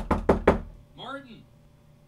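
Quick knocking on a closed interior door, a rapid string of raps that stops about half a second in, followed by a short call.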